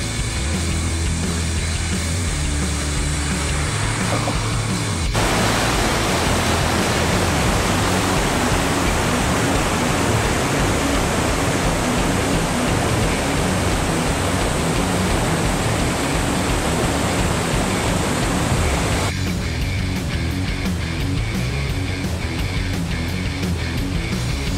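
Background music, with the rush of whitewater rapids coming in abruptly about five seconds in and cutting off abruptly about nineteen seconds in; the rushing water is the loudest part while it lasts.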